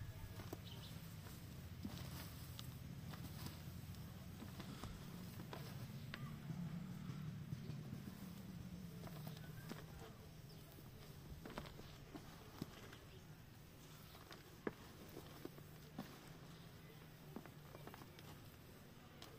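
Hands mixing dry rice husks and black soil in a plastic tub: faint rustling and scraping with scattered light ticks, over a low steady hum that eases off about halfway through.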